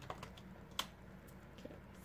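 Faint, irregular light clicks and taps of a makeup brush working in a hard-cased eyeshadow palette, with one sharper tap about three-quarters of a second in.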